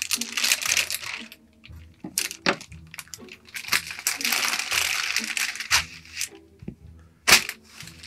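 Scissors cutting open a thick vacuum-sealed plastic pillow bag, then the plastic crinkling as hands work the pillow inside it, with scattered sharp clicks. A single sharp click near the end is the loudest sound.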